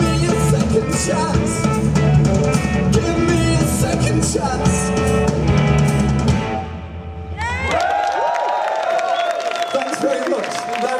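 Live rock band on drum kit, electric guitar and bass, with a man singing, playing the close of a song. The music stops about six and a half seconds in, and a second later the crowd cheers and whoops.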